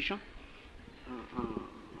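Old radio-interview recording of an elderly man's voice. A word ends at the very start, then comes a pause filled with tape hiss and low rumble. About a second in there is a short, drawn-out vocal sound, like a hesitation, before his speech resumes.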